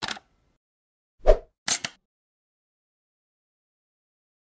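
Intro-animation sound effects over dead silence: a brief click at the start, a short pop with a low thump a little over a second in (the loudest sound), then two quick sharp clicks.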